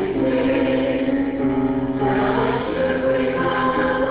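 A small choir singing in parts, holding long sustained notes.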